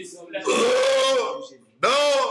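A man's voice praying aloud in drawn-out, throaty vocalising: one syllable held steady for almost a second, then another starting near the end.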